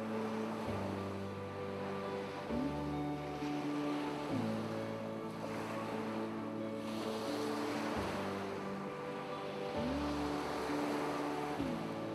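Soft background music of held synth-pad chords that change every couple of seconds, two of them sliding up in pitch and back down, laid over the sound of ocean waves washing in and out.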